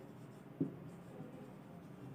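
Marker pen writing on a whiteboard: faint scratching of the felt tip across the board, with one short tap a little over half a second in.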